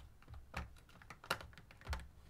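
A few light, separate clicks and taps of hands handling a plastic drawer storage unit, the sharpest a little past halfway.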